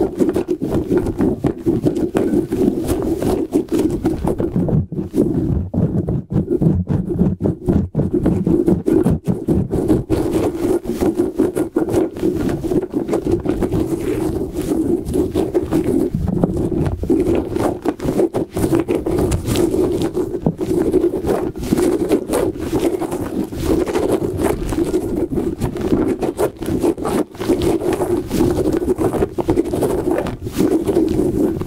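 Hands rubbing, scratching and squeezing a rubbery spiky squishy ball close to the microphone, a dense, rapid run of rubbing and scraping strokes with the strands rustling.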